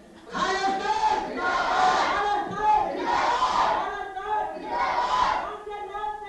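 A large crowd shouting slogans in unison, in about four loud surges, from a film's soundtrack.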